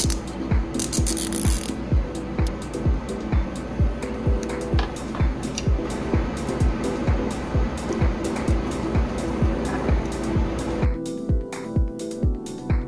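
Background electronic music with a steady beat of about two kicks a second; the music thins near the end. Near the start there is a short hissing rasp, a nylon cable tie being pulled tight through its ratchet.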